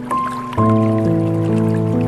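Slow, gentle piano music, a new note or chord struck about every half second, with a deep bass note coming in about half a second in, over a faint trickle of water.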